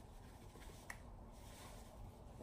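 Near silence: room tone, with a single faint click just before a second in.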